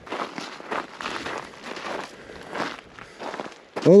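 Footsteps on loose rock and gravel, an uneven run of scuffs and crunches, ending as the walker stops near the end.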